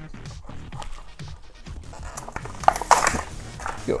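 Clear plastic blister pack on a Hot Wheels card crinkling and crackling as it is pulled open, loudest about two to three and a half seconds in.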